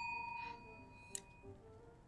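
A small bell, struck just before, rings with a few clear steady tones and fades away within the first half second. A faint click follows about a second in.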